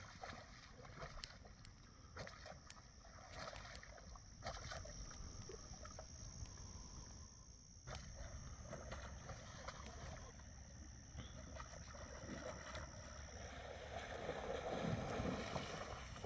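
Faint night-time bush ambience: a steady high-pitched insect trill with scattered soft rustles and crunches, and a soft rustling noise that swells near the end.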